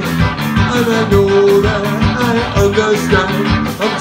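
Live ska band playing with drums, bass guitar and vocals, keeping a steady beat of about three hits a second.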